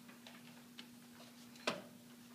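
Small clicks and rustles as performers settle at a piano bench and handle sheet music, with one sharp knock near the end, over a steady faint hum.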